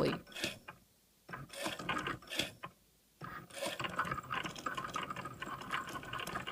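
Cricut Maker engraving an aluminum bracelet: the carriage motors move the engraving tip in short, irregular starts and stops as it scratches the metal, with two brief pauses in the first half.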